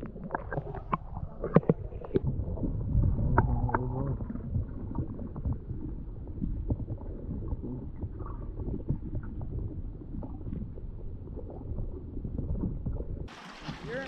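Muffled water sloshing and rumbling around a kayak, with scattered light knocks and clicks. The sound changes abruptly about a second before the end.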